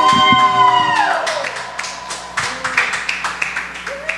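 A male singer's last held note, amplified through the PA, trailing off and falling in pitch over about a second as the backing music stops, followed by scattered applause from a small audience.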